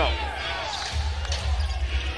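A basketball being dribbled on a hardwood court.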